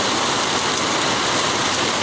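Heavy rain falling steadily on a flooded street and a stall's tarpaulin, an unbroken rushing hiss of rain and running water.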